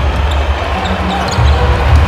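Basketball game court sound: a basketball being dribbled upcourt with low arena music underneath.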